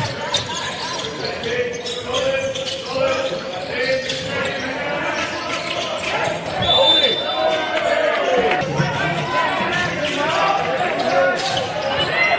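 Live basketball game sound in a gymnasium: the ball bouncing on the hardwood court, shoes squeaking, and players' voices calling out.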